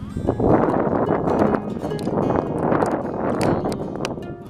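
Wind buffeting the camera microphone in uneven gusts, with the crunch of footsteps in sand.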